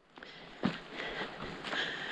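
A hiker's footsteps on a dirt trail, with backpack and clothing rustling as she walks, and one sharper knock about half a second in.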